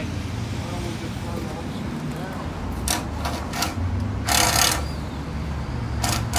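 Steady low rumble of street traffic, with a few sharp clicks about three seconds in and a short, loud hiss a little after the middle.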